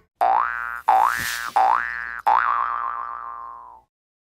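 Cartoon-style 'boing' sound effect: four springy notes in a row, each sliding upward in pitch, the last one wobbling and fading out.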